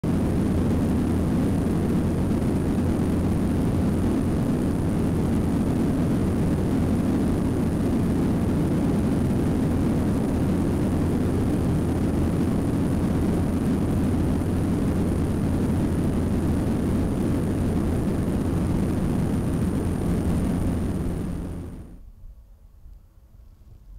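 Steady, loud drone of a de Havilland Canada DHC-6 Twin Otter's two Pratt & Whitney Canada PT6A turboprop engines and propellers, heard from on board in flight, with a faint high whine over the low drone. It falls away suddenly near the end.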